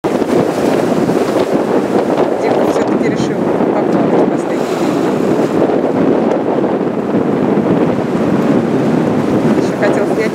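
Steady wind buffeting the microphone on an open boat, over the wash of choppy sea water.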